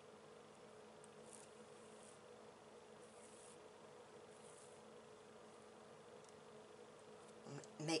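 Near silence: a faint steady low hum of room tone, with a few faint soft rustles as the beadwork and thread are handled.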